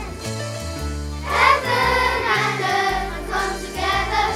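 Children's choir singing a Christmas song over an instrumental backing track with a steady, stepping bass line.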